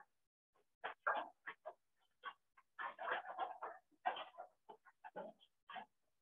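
Faint, irregular animal noises heard through a video call's microphone, in short bursts.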